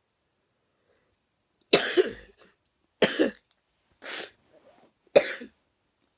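A boy with a cold coughing four times, about a second apart, starting nearly two seconds in; the third cough is softer.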